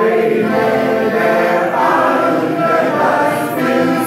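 A group of men and women singing a song together in chorus, with sustained notes, accompanied by a piano accordion.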